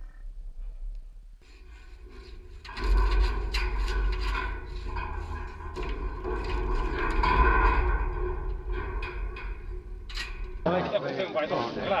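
Bison crowding through a wooden-walled handling chute: hooves on the ground and bodies knocking against the panels, turning loud about three seconds in with many sharp knocks over a deep rumble. It stops abruptly near the end.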